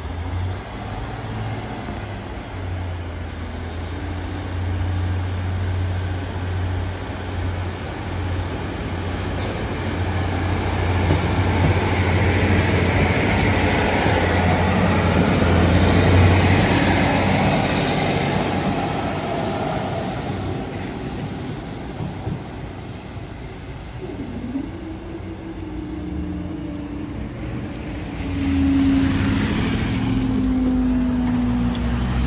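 Northern Class 150 diesel multiple unit pulling away and crossing a level crossing: a steady low engine hum under a rush of wheels on rail that builds to its loudest about half-way through, then fades. Near the end, road vehicle engines take over as traffic moves off over the crossing.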